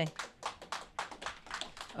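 Light, scattered applause from a seated audience: many irregular hand claps, after a speaker's closing words.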